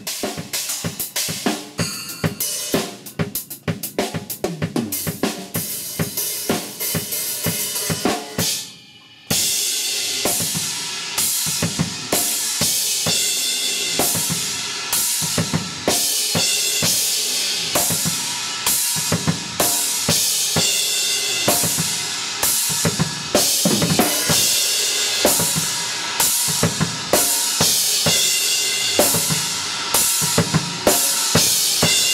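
Acoustic drum kit played hard: kick, snare, hi-hat and cymbals in a driving groove. The playing breaks off briefly about eight seconds in, then comes back heavier with crash cymbals ringing over regular hits.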